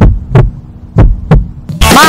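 A heartbeat sound effect as a suspense cue: two double thumps, about a second apart, over a low steady hum. Near the end a voice calls a number and loud music comes in.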